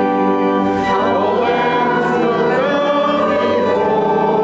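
Congregation singing a hymn with organ accompaniment, sustained notes moving to new chords about a second in and again midway through.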